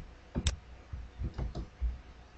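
A handful of sharp clicks at irregular intervals from keystrokes on a computer keyboard, as blank lines are deleted in a code editor.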